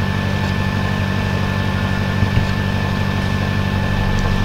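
A steady low hum with a thin, high, steady tone above it: a constant background drone in the recording. There is a small soft bump a little past two seconds in.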